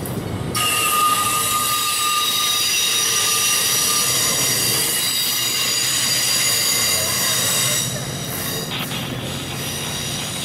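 MARC commuter train's bilevel passenger cars rolling past at close range, the wheels squealing with several steady high-pitched tones over the running noise. The squeal and the loudness drop about eight seconds in as the last car clears.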